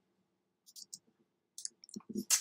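A few faint, sharp clicks of computer keyboard keys: a couple near the middle and a quick cluster near the end.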